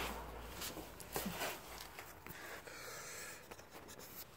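Faint handling and movement noise: rustling and a few light knocks over a low hum that fades out about two seconds in.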